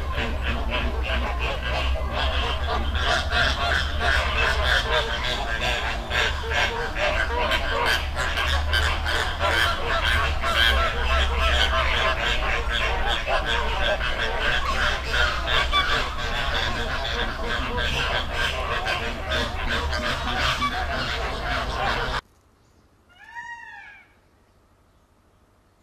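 A flock of flamingos honking in a dense, continuous chatter of overlapping calls over a low rumble, cutting off suddenly near the end. A short, faint bird call of a few arching notes follows.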